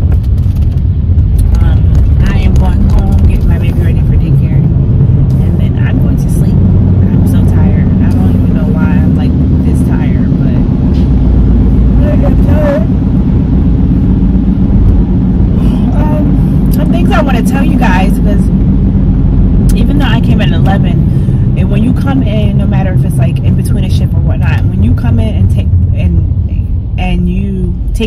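Steady low rumble of road and engine noise inside a moving car's cabin, with a woman's voice heard off and on.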